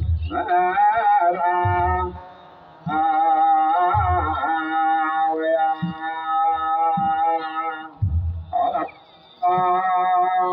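A group of Ethiopian Orthodox clergy chanting together in long, held, wavering notes, with a few deep beats of a kebero drum.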